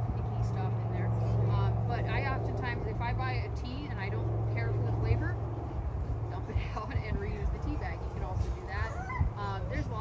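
Indistinct talking from people in a small open-air group. Under it, a steady low hum runs through the first half and fades out about five seconds in.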